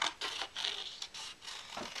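Scissors cutting through a paper template: a run of short, crisp, irregular snips with paper rustling.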